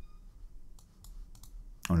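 A handful of light, irregular clicks from a computer keyboard being typed on, spaced out over a quiet background.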